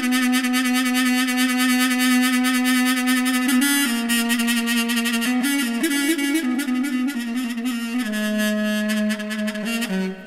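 Solo mey, the Turkish double-reed woodwind, playing a slow free-rhythm uzun hava melody: long held, reedy notes with wavering ornaments, moving between pitches and settling onto a lower held note about eight seconds in.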